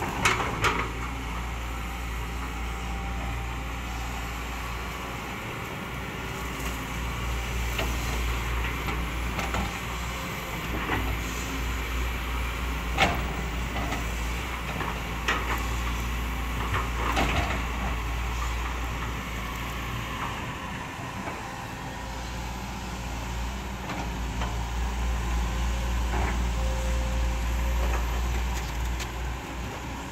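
Hydraulic excavator's diesel engine running steadily under load as it digs thick mud. A few sharp metallic clunks from the bucket and boom linkage sound now and then, the loudest about halfway through.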